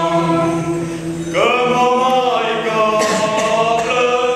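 Mixed choir of men's and women's voices singing a Romanian Christmas carol (colind) unaccompanied, in long held chords over a low sustained note; a new phrase comes in with a short upward slide about a second and a half in.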